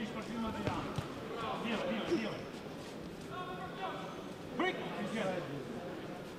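Scattered shouts and calls from voices around a boxing ring, with a few short knocks from the exchange in the ring: one just under a second in, and a louder one about four and a half seconds in.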